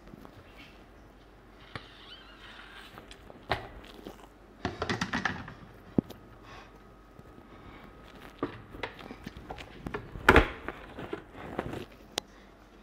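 Scattered knocks and clatter of a stainless-steel mixer-grinder jar and its plastic lid being handled, lifted from the motor base and set down. The loudest knock comes about ten seconds in.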